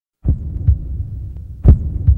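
A heartbeat-like pulse: pairs of low thumps repeating about every second and a half over a low hum, starting after a brief silence.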